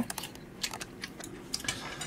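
A few faint, scattered clicks over low background noise.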